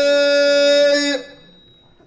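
A man's voice holding one long sung note of Amazigh tanddamt poetry through a microphone, cutting off about a second in.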